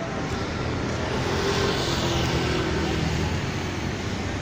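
A motor vehicle passing: a steady low engine hum, with a hiss that swells around the middle and fades again.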